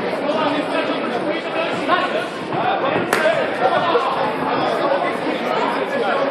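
Indistinct chatter of spectators echoing around a large sports hall, with one sharp smack about three seconds in.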